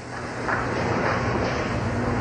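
Bowling-centre background noise: a steady low rumble with a faint hubbub that grows a little louder in the first half second.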